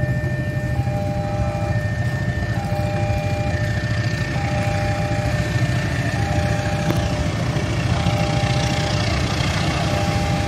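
Railway level-crossing warning alarm sounding, two electronic tones taking turns in a steady repeating pattern, over a constant low engine rumble. A rising hiss from the approaching train builds near the end.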